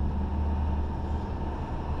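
Engine and road noise of a vehicle driving through city streets: a steady low drone.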